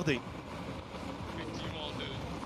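Steady rushing noise of a vehicle running, heard on an outdoor microphone during the race.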